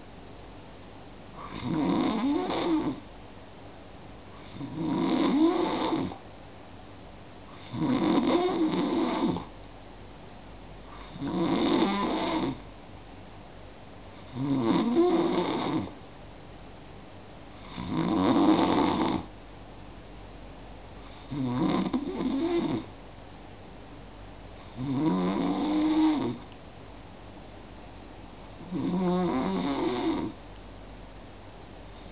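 Snoring of a sleeper in deep, even breathing: nine rasping snores, each about a second and a half long, in a steady rhythm of about one every three and a half seconds, with a low hiss between them.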